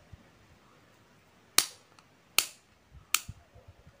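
Three sharp plastic snaps, a little under a second apart, as cutting pliers bite through the rim of a used Tata Nano fuel filter's plastic housing.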